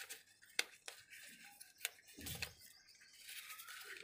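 Folded paper origami pyramids being handled and stacked: faint rustling with a few soft clicks and taps of stiff paper against paper and the tabletop.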